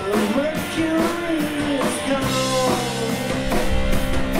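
A rock band playing live, with electric guitar, bass guitar and drum kit. Pitched notes bend up and down over the drums, and a deep bass note comes in near the end.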